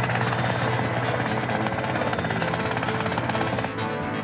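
Fast rotor chop of a Mil Mi-8-family military helicopter close overhead, heard over orchestral film music. The rotor sound starts abruptly and cuts away shortly before the end.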